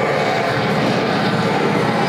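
A live experimental noise drone in D, many steady tones layered over a dense hiss, held at an even level without a break.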